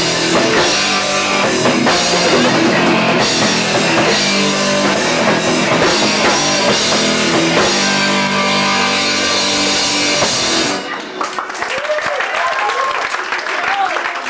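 Hardcore punk band playing live: electric guitar, bass and drum kit. The song stops abruptly about three-quarters of the way through, and scattered shouting voices from the crowd follow.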